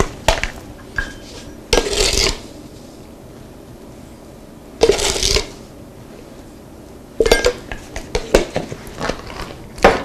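Sugar being measured into a stainless steel saucepan with a metal measuring cup. There are two short, rustling pours, and near the end a run of light metal clinks and taps of the cup against the pan.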